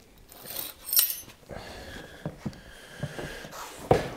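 A dog sniffing and snuffling close up, with a light metallic clink about a second in and a few faint ticks after.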